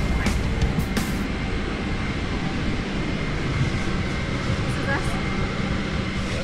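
Steady airliner cabin noise during boarding: a continuous rush of air and machinery, strongest in the low range.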